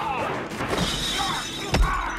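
Glass shattering with a bright, ringing spray during a brawl, followed near the end by a sharp, hard hit, the loudest moment, over grunts and the film's music score.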